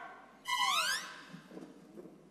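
A short whistle-like sound effect about half a second in: a pitched tone that holds briefly, then slides upward in pitch for about half a second.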